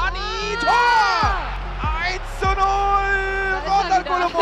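Music with a voice calling out long, drawn-out notes: the first rises and falls, and a later one is held steady. Faint crowd noise sits underneath.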